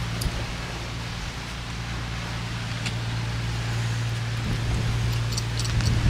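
Motor yacht's engine running steadily under way, a constant low hum, with a steady rushing noise of wind and water over it.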